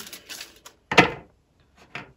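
Tarot cards being handled: a soft rustle of cards, then one sharp tap about a second in, and a faint click near the end.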